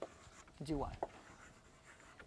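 Faint scratching of writing on a lecture board, with one short spoken word about half a second in.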